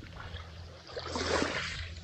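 Shallow seawater washing and splashing at the water's edge, a soft swell of noise that rises about a second in and fades again, with a steady low hum underneath.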